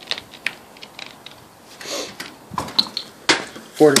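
Light, irregular clicks and crackles of a thin plastic water bottle being handled, with a short swish about halfway through.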